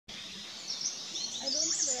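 Wild birds chirping, with many short high notes sliding up and down, over steady outdoor background noise.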